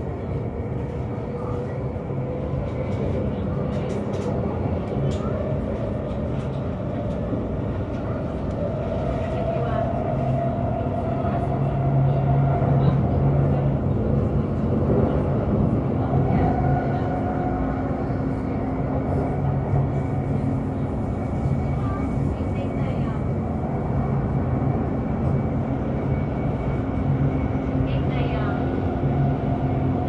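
Electric commuter train running at speed, heard from inside the carriage: a steady hum from the motors and wheels on the rails, with tones that drift a little in pitch as the train's speed changes.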